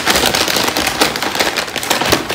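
Paper takeout bag rustling and crinkling loudly as a hand rummages inside it, a dense run of crackles.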